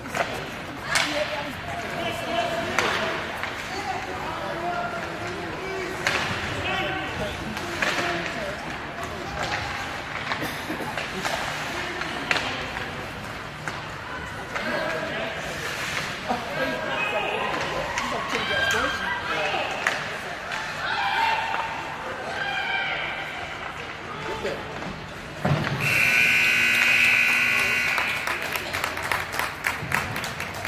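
An ice-rink scoreboard horn sounds for about three seconds near the end, a loud steady multi-tone blast marking the end of the first period. Before it, people talk in the arena with scattered sharp clacks of sticks and puck.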